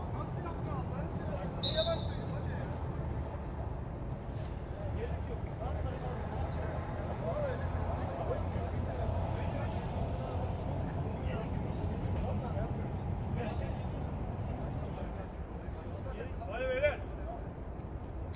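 Outdoor ambience at a floodlit football pitch: a steady low rumble, with distant players' shouts and talk. A short, high referee's whistle blast sounds about two seconds in.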